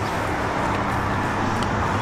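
Steady outdoor background noise: an even hiss with a faint low hum underneath, holding at one level throughout.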